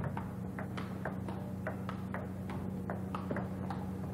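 Table tennis rally: the celluloid ball clicks off the paddles and the table in a quick, even rhythm of about four clicks a second. A steady low electrical hum runs underneath.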